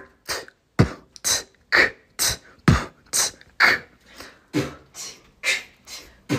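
Vocal beatboxing: a steady beat of mouth-made kick-drum and hissing snare sounds, about two a second.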